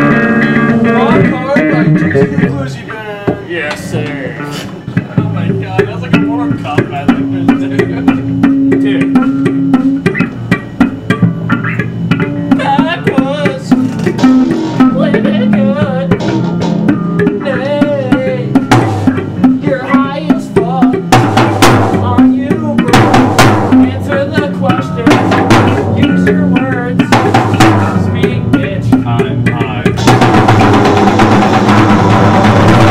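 Rock band demo, instrumental passage: a guitar plays a wavering melodic line over bass and drums, the drum hits growing stronger about two-thirds of the way through.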